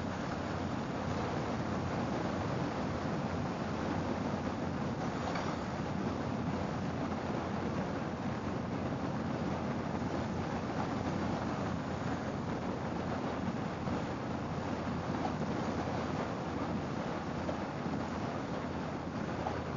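Harley-Davidson V-twin motorcycle cruising steadily at road speed, its engine and tyre noise mixed with wind rushing over the microphone.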